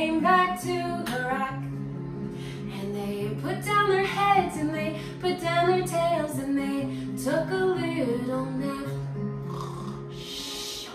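A woman singing a children's song to her own acoustic guitar, strumming steady chords under the melody.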